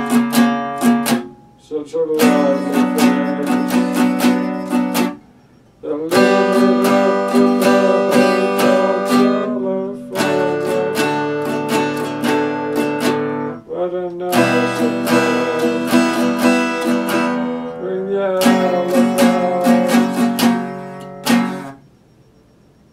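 Acoustic guitar strummed, one chord held for a few seconds and then changing to the next, with short pauses between the groups. The playing stops just before the end.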